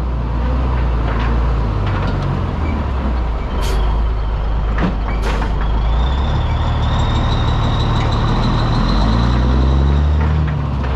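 Caterpillar diesel engine of a Peterbilt 362 cabover truck running at low speed as it creeps forward, its note shifting a few times. Two short hisses of air come from the air brakes, about 3.5 and 5 seconds in, and a thin high whine sounds through the second half.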